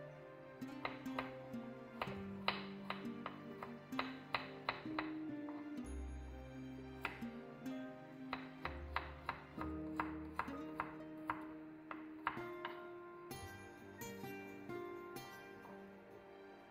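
Knife chopping onion on a wooden cutting board, sharp strikes coming in short quick runs, over background music with sustained notes.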